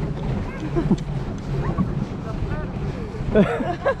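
Several people chatting and calling out in the background, over a steady low rumble of wind on the microphone.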